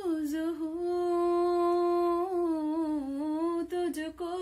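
A woman singing unaccompanied, holding one long note with a slight waver for about three seconds, then a few short notes near the end.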